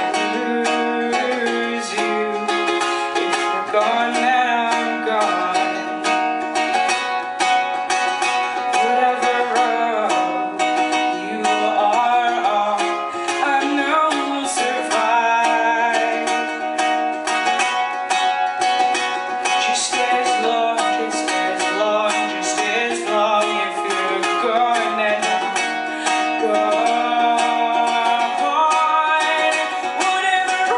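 A woman singing into a microphone while strumming a ukulele, a live solo song played without a break.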